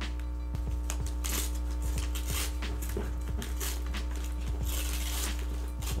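Brown paper parcel wrapping being torn and pulled off a box by hand, several short tears with a longer one near the end, over steady background music.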